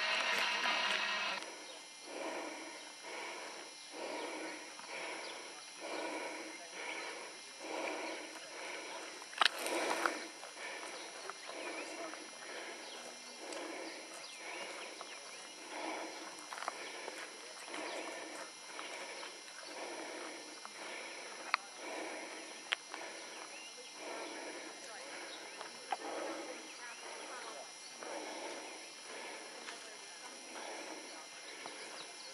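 Footsteps crunching on a dry dirt-and-gravel trail, about one step a second, with a sharper knock about nine seconds in and a few small clicks later.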